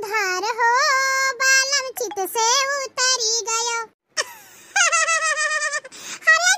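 A cartoon character's voice, pitched up high and artificial-sounding like a child's, talking in a sing-song way. It breaks off for a brief pause about two-thirds of the way through, then carries on.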